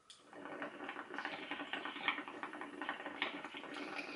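Water bubbling through a small glass dab rig, a 10 mm recycler, as a dab is inhaled through it: a fast, steady gurgle that starts just after a brief tick at the start.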